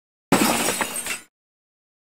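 A crashing, shattering sound effect, about a second long, starting just after the beginning and cutting off abruptly.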